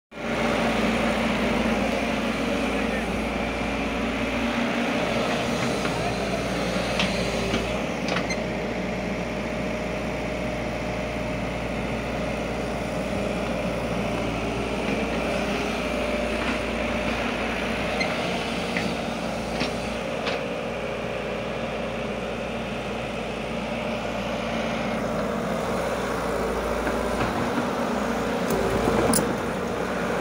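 Kato HD400SEV hydraulic excavator's diesel engine running steadily, with a few sharp clicks scattered through it.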